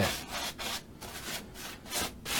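Paintbrush bristles rubbing across the surface of an acrylic painting in quick repeated strokes while clear coat is brushed on.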